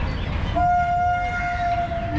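A horn sounds once, a steady single-pitched blast lasting about a second and a half, over low outdoor background noise.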